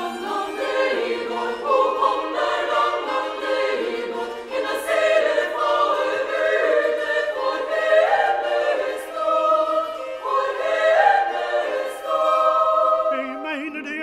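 Chamber choir singing a Norwegian folk-song arrangement in several voice parts, in phrases a few seconds long.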